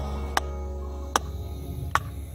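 Batoning: a wooden baton strikes the spine of a thick knife, made from a meat cleaver, three times, driving the blade down through a piece of Chinese elm. The sharp knocks come a little under a second apart.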